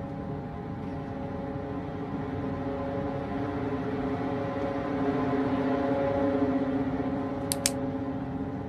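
Tense film-score drone: several sustained low tones held together as a chord, slowly swelling louder, with two short clicks near the end.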